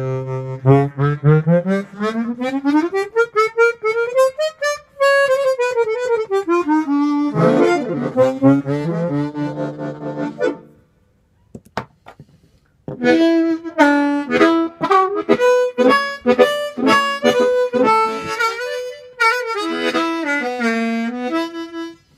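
Harmonica played cupped against an Audix OM6 dynamic microphone. The first phrase has a long slide rising and then falling in pitch. After a break of about two seconds, a second phrase of short, quick notes follows.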